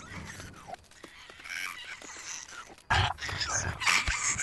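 Animal-like creature sounds from a horror film's soundtrack, faint at first and getting louder about three seconds in.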